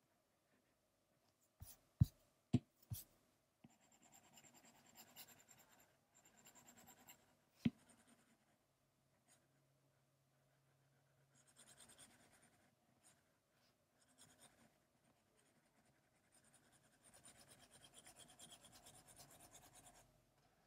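Stylus tip scratching faintly on an iPad's glass screen in quick back-and-forth shading strokes, in three stretches. A few sharp taps of the tip on the glass come about two seconds in, and a single louder tap near eight seconds.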